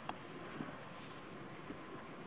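A cat eating rice from a ceramic plate: three short, faint clicks of its mouth and teeth on the food and plate over a steady background hiss.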